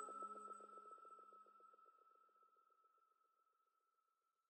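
Dying tail of the chime from a logo sting: one steady high tone with a fast fluttering echo that fades out over about two seconds.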